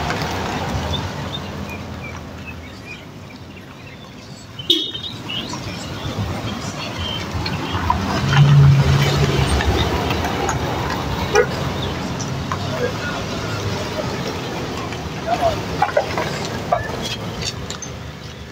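Street ambience: a steady low traffic rumble with faint voices, a sharp knock about five seconds in, and a louder low hum lasting about a second near the middle.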